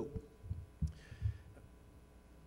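A few soft, low thumps of microphone handling noise as a handheld mic is picked up.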